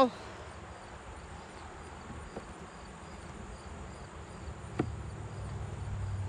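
Insects outdoors: a faint, regular high chirping typical of crickets over a low hum of honeybees around the open hive. A single light click comes near the end.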